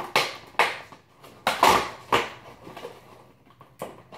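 Cardboard door of an advent calendar box being pushed open and the small item inside rummaged out: a series of short scraping, tearing noises of card, the loudest about a second and a half in, with a sharp tap near the end.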